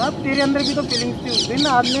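Birds chirping and squawking in quick, high-pitched calls several times a second, heard under a man's talking.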